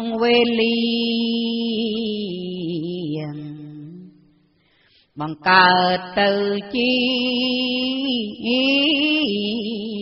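A woman's solo voice chanting Khmer smot, Buddhist verse sung in long, slowly wavering held notes. One phrase fades away about four seconds in, and after a brief silence a new phrase starts just after five seconds.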